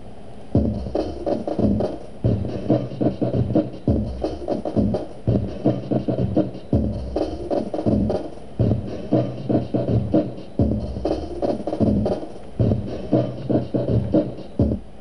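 Drum loop played back by SunVox's Sampler module, starting about half a second in: a fast, choppy run of drum hits, the sample re-triggered line by line so it follows the song's tempo while the BPM is changed during playback. Part of the pattern plays the loop at a higher pitch, which runs faster.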